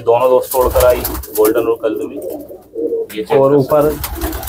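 Domestic pigeons cooing close by, several wavering coos one after another, with a brief low rumble about a second in.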